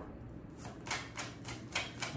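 A tarot deck being shuffled by hand: a quick run of light card clicks, about six a second, starting about half a second in.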